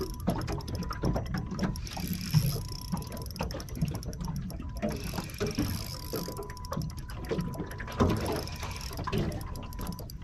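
Spinning reel being cranked under the load of a hooked kingfish, its gears clicking steadily as line is won back during the fight.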